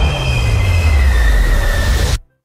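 Subway train running with its wheels squealing on the rails: a deep, heavy rumble under high metallic squeals that slowly drop in pitch.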